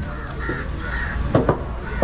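Crows cawing, two short calls about half a second apart, then two quick chops of a heavy curved knife cutting through fish onto a wooden block about one and a half seconds in.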